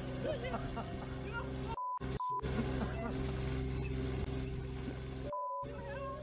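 Men's voices shouting over a small excavator's engine running steadily, cut three times by a steady beep of censor bleeps masking swearing: twice in quick succession about two seconds in, and once more near the end.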